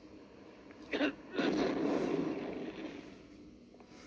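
A man with a head cold sneezing: a short catch of breath about a second in, then a longer harsh burst that fades over a second or so. It is heard through a tablet's speaker.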